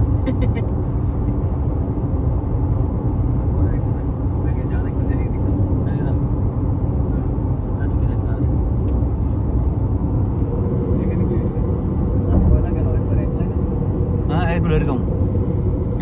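Steady road and engine noise inside a car cabin cruising at highway speed, a low rumble throughout, with low voices talking now and then.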